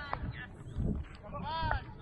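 Men shouting in short, high, rising-and-falling calls as a batsman is given out in club cricket: the fielding side appealing and celebrating the wicket.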